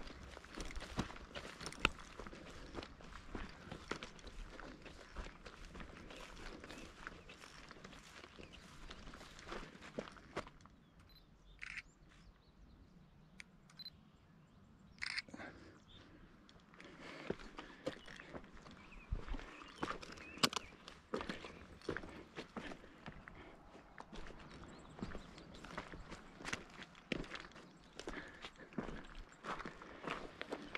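Footsteps of a person walking through dry grass and over rocky ground, a steady run of small crackles and scuffs. The steps pause for a few seconds near the middle, then resume.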